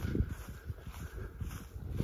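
Uneven low rumbling of wind on the microphone, with soft footsteps on a mown grass path.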